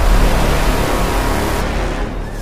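Cinematic logo-reveal sound effect: a noisy boom with a deep rumble and hiss, slowly fading, under music.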